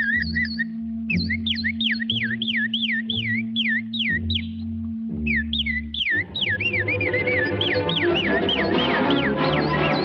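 Cartoon orchestral score: a high, warbling, whistle-like melody repeats over a held low note and bass notes. About six seconds in, the full orchestra comes in and the sound thickens.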